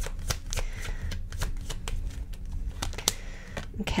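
A tarot deck being shuffled by hand: a run of quick, irregular card flicks and snaps.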